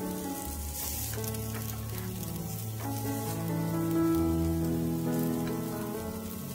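Shredded-radish pancakes sizzling in hot oil in a frying pan, under background music of slow held notes.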